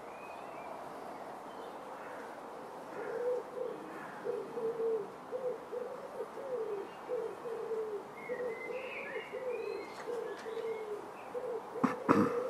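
Dove cooing in a long run of low, repeated phrases that starts a few seconds in, with a small bird chirping briefly above it. A sharp knock comes near the end.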